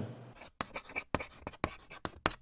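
Faint, quick, irregular scratches of chalk writing on a blackboard, used as the sound effect of a title card.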